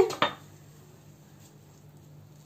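A single sharp knock of a utensil against the cooking pan, about a fifth of a second in, then faint room tone.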